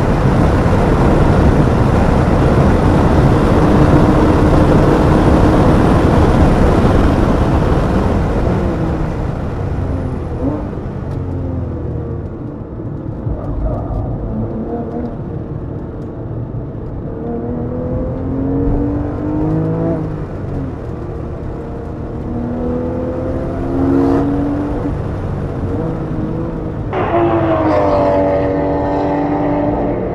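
Porsche 911 GT3 flat-six engine at full speed, heard from on board under heavy wind and road noise. After about eight seconds the noise drops away and the engine note falls and rises repeatedly as the car slows through tight turns, then climbs strongly under hard acceleration near the end.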